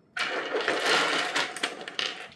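A hand scooping up a handful of small rough pebbles from a tabletop, the stones clattering and grinding against each other and the table for about a second and a half before fading near the end.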